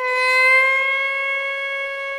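Hichiriki, the Japanese double-reed bamboo oboe, sounding one loud, reedy held note that starts suddenly, bends slightly up in pitch at first, then holds steady.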